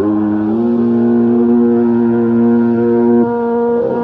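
Carnatic classical music: one long, steady note held for about three seconds, then a short slide in pitch near the end, after wavering ornamented phrases just before.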